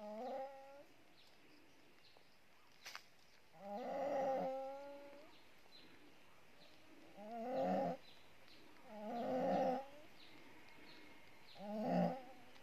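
A ewe in labour bleating: five drawn-out, wavering calls a few seconds apart while the amniotic sac is being delivered.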